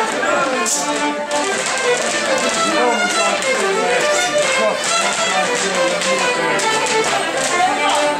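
Several fiddles playing a rapper sword dance tune together, with sharp taps scattered through.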